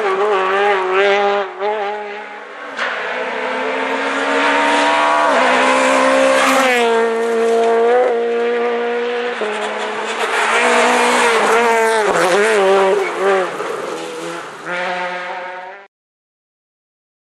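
Rally car engine revving hard, its pitch climbing and dropping repeatedly through gear changes and throttle lifts. The sound cuts off suddenly near the end.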